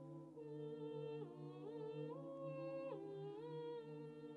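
Mixed choir singing a cappella: a low held chord sustained underneath while an upper melody line moves in slow steps, up and down several times.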